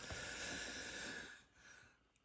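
A faint, long breath out through the nose, an even hiss lasting about a second and a half.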